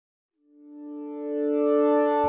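A sustained electronic tone with several overtones, like an intro sound logo, swelling in from silence about half a second in and holding steady at full strength.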